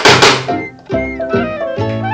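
Background music with plucked-string notes. Right at the start, two loud, sharp snaps about a quarter second apart come from the Tokyo Marui Glock 19 gas-blowback airsoft pistol as it is triggered while aimed.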